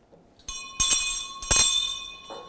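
A small metal bell rung three times within about a second, each strike ringing on, signalling the start of Mass.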